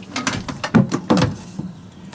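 A quick run of knocks and clatters from handling on a boat's deck and hatch area, the two loudest about three-quarters of a second and just over a second in.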